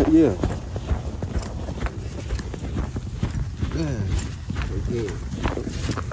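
Footsteps crunching through deep snow: an uneven run of soft thuds and crunches from a person and a leashed dog pushing through it.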